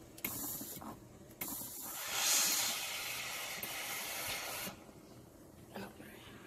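Steam iron releasing steam onto cotton fabric: first a short hiss, then a longer, louder hiss lasting about three seconds, to set a pressed crease.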